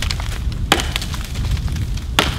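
Axe blows chopping into a fallen log, the wood splintering: two sharp strikes, one at the start and one under a second later, over a steady low rumble.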